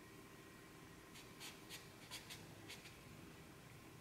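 Black marker pen scratching on paper: a quick run of about eight short strokes in the middle, faint.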